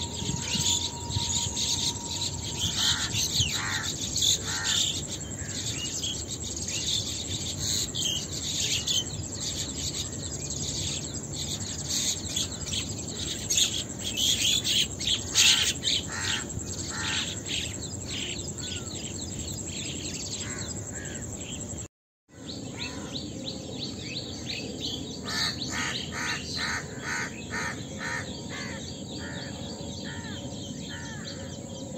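Rapid high chirping calls, coming in repeated quick series, over a steady low background hum. The sound cuts out completely for a moment about two-thirds of the way through.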